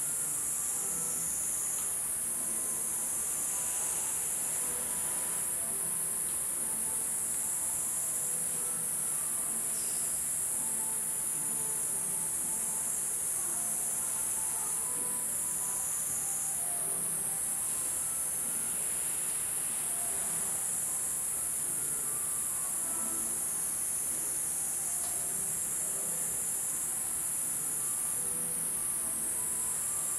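A steady, high-pitched insect chorus that wavers slightly in strength, with faint short tones scattered underneath.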